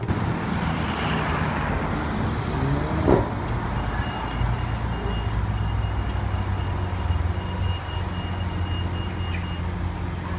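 Lamborghini Aventador SV's V12 idling with a steady low note, with one sudden loud burst about three seconds in.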